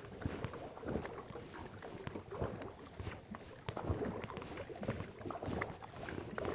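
Kayak paddling: the paddle blades dipping and pulling through the water in irregular splashes, with drips off the blades and water washing along the hull.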